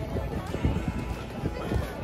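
Footsteps walking on packed snow, heard as irregular low thuds, with voices and music in the background.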